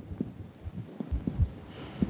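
Fingertip percussion of the abdomen: fingers of one hand tapping on the fingers of the other hand laid flat on the belly around the navel, giving a series of short, dull, low taps a few times a second. The percussion note here is tympanic, the hollow note of gas-filled bowel.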